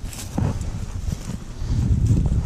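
Low rumbling handling and movement noise on a head-worn camera's microphone, with a few short knocks and clicks, louder toward the end.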